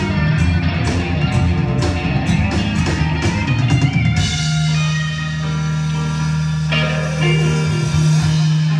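Live rock band of electric guitar, bass guitar, keyboard and drum kit playing with a steady drum beat. About four seconds in, the drums drop out and the band holds a sustained low chord.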